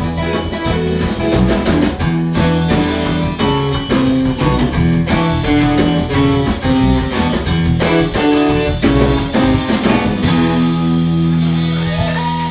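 Live band playing a Motown-style song on electric guitars, keyboards and drum kit. About ten seconds in the drums stop and the band holds a chord that rings on.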